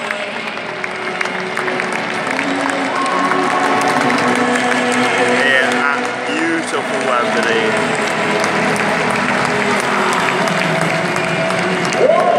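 Football crowd in a large stadium applauding and chattering, with music playing behind it.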